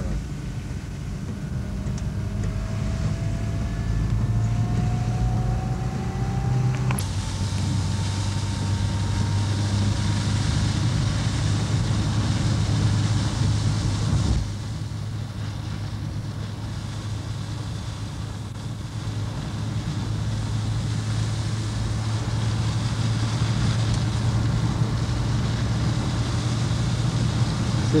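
Car engine and tyre noise heard from inside a moving car on a wet road: a steady low hum with hiss. A whine rises slowly in pitch for the first seven seconds and breaks off with a sharp click, then a new whine rises again. The sound drops a little in level about halfway through.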